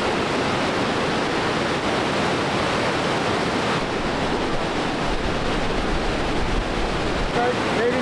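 Swollen waterfall, muddy brown floodwater pouring down over rocks: a loud, steady rush of water.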